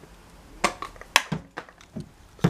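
A handful of light, separate knocks and clicks as plastic slime containers are picked up and set down on a table.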